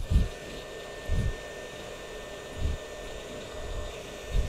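Hot air rework station blowing a steady stream of air with a faint high whistle, reflowing solder to seat a SAW filter on a circuit board. A few soft low thumps come at intervals of about a second and a half.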